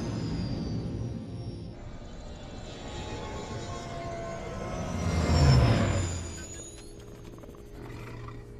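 Film sound of the Millennium Falcon flying past overhead: its engine sound swells to its loudest about five and a half seconds in, then fades with a falling pitch. Background film music runs underneath.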